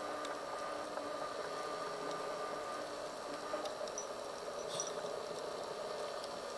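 Steady underwater background noise during a night dive: a low hiss with a faint hum and scattered faint clicks.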